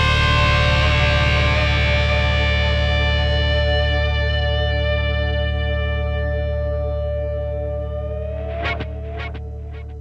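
A distorted chord on an 8-string electric guitar run through effects, left ringing over a held low bass note and slowly fading once the playing stops. Near the end a short upward bend and a couple of brief string noises.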